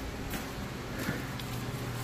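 Bar room tone: steady background noise with a few faint clicks, and a low steady hum that comes in about a second in.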